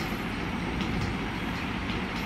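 Steady background noise, a low rumble with hiss, without distinct events.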